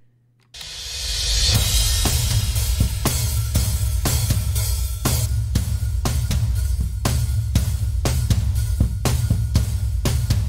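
Multitracked drum kit recording played back all together: kick, snare, hi-hat and cymbals in a steady beat with about two strong hits a second over a heavy low end. It starts about half a second in with a rising swell of cymbal-like noise.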